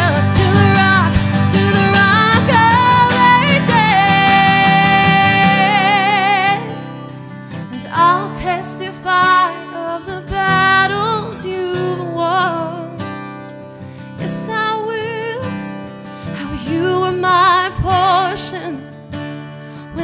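A woman singing a worship song with acoustic guitar accompaniment. It is loud at first, ending in a long held note with vibrato, then drops quieter about six and a half seconds in, with shorter sung phrases.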